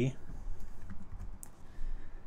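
Typing on a computer keyboard: a few scattered, separate keystrokes over a low steady hum.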